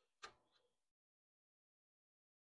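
Near silence, apart from one faint knock about a quarter second in as the chainsaw bar is handled in a bench vise.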